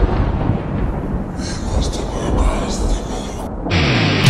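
Intro sound effect: a dense, thunder-like rumble that carries on from a loud boom, with crackling in the middle. Near the end a low note slides just before the metal song kicks in.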